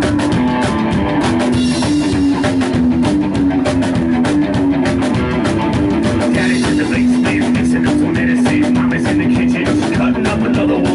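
Live rock band playing an instrumental passage: electric guitar, drum kit and upright double bass, with a steady beat and a repeating riff, and no vocals.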